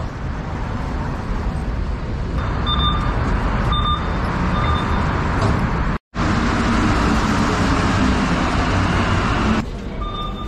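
Steady street traffic noise with three short electronic beeps about a second apart; after a cut, a metro train in an underground station, a loud steady rumble with a low motor hum.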